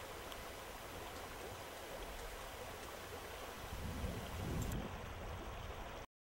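Faint, steady rush of a shallow river's current, with a low rumble swelling briefly about four seconds in.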